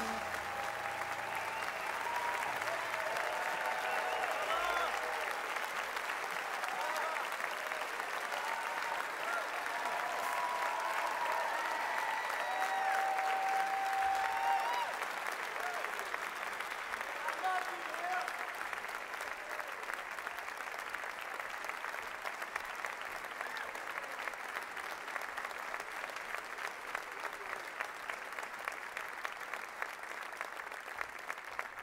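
Concert audience applauding, a dense steady clapping with voices calling out and cheering over it during the first half; the applause slowly dies down toward the end.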